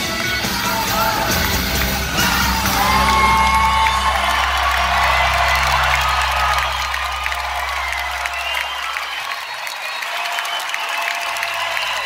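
A rock band's final chord rings out through the PA and fades away about nine seconds in, under a crowd cheering and whooping.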